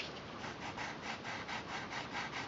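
Brown colored pencil shading on tan paper in quick back-and-forth strokes, about four a second, growing stronger about half a second in.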